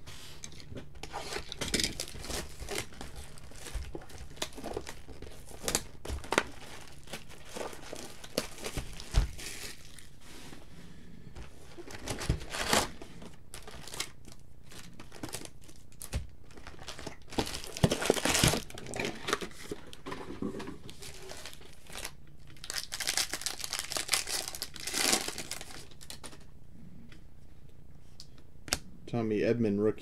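Foil-wrapped baseball card packs being torn open and their wrappers crinkled in the hands, in irregular bursts of crackling with short pauses between.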